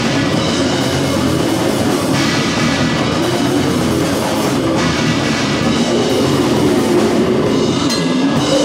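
Brutal death metal band playing live: electric guitar and drum kit, loud and dense, with the sound shifting at about two and again at about five seconds in.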